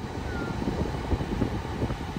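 Low, steady rumble inside a stopped car with its engine idling, with some buffeting on the phone's microphone.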